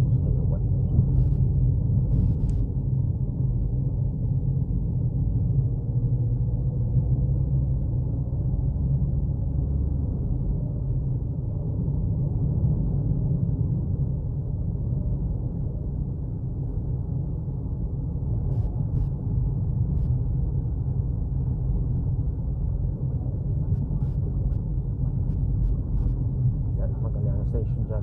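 Steady low rumble of engine and road noise heard inside the cabin of a moving car, with a few faint clicks.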